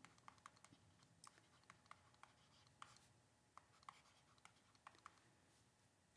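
Near silence with faint, irregular clicks and light scratches of a stylus tapping and stroking on a pen tablet while writing by hand.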